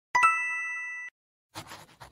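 A bell-like ding sound effect, struck once, ringing a clear chord that fades slightly and is cut off after about a second. About a second and a half in, a scratchy pen-writing sound effect begins.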